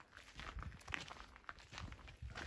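Faint footsteps of hikers walking on a dirt and gravel trail, a run of irregular short crunches.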